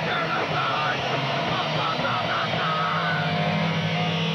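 Live punk band playing loud through amplifiers: a dense, distorted wash with a wavering line riding above it. A little past three seconds in, a steady low chord settles in and rings on.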